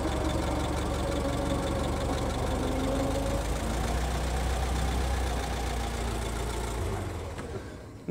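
Ford Model T's four-cylinder engine running steadily in top gear as the car drives along: a steady low rumble that fades away near the end.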